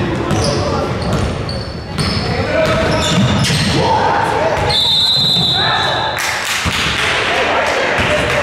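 Basketball game sounds echoing in a large gym: the ball bouncing on the hardwood floor as it is dribbled, with short high sneaker squeaks on the court.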